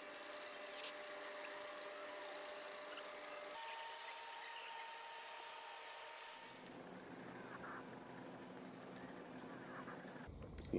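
Quiet outdoor ambience with a faint steady hum; about six and a half seconds in, a low engine drone comes in and holds steady.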